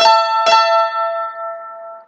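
All-solid-wood Eastman oval-hole mandolin sounding an A and E double stop: A on the 5th fret of the E string with E on the 7th fret of the A string. It is picked twice, about half a second apart, and the two notes ring together and fade out over about a second and a half.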